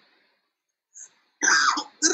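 A pause, then a man's short cough in the second half, just before he speaks again.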